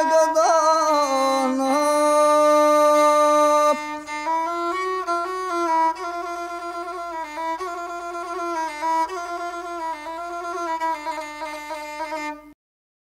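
Gusle, the single-string bowed folk fiddle of a guslar: a long held note for about the first four seconds, then the gusle alone plays a short, quieter, ornamented closing melody at the end of the sung epic.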